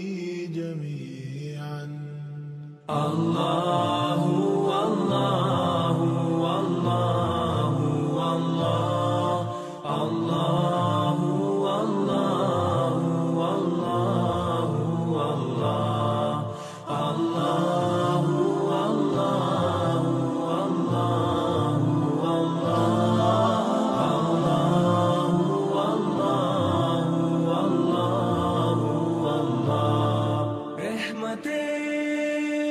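Background vocal music: voices chanting a nasheed-style religious song, which gets fuller and louder about three seconds in.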